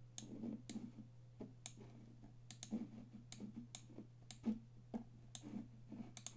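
Faint computer mouse clicks, irregular at roughly two a second, as shapes are selected and dragged on screen, over a steady low electrical hum.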